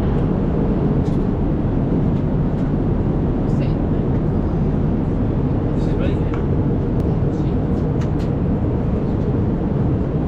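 Steady low rumble of an airliner cabin, from the engines and air system, with a few faint short clicks and sounds over it.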